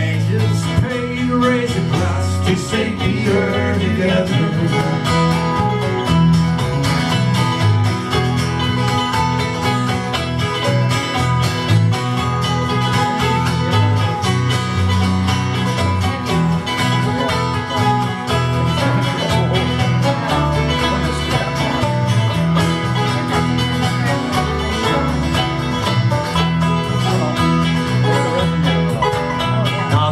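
A live acoustic string band, with five-string banjo, mandolin and acoustic guitar, playing an instrumental break in a bluegrass-style folk song, with no singing.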